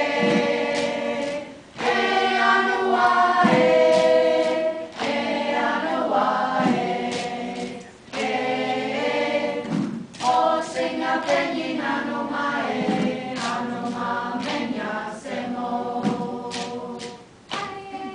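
A group of children and adults singing together in unison, in phrases broken by short pauses, with scattered sharp strokes from handheld gourd rattles.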